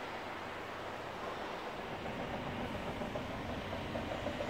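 Steady outdoor background noise from a high-rise balcony, an even hiss and hum with no distinct events.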